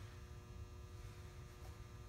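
Near silence: a faint, steady low hum of room tone.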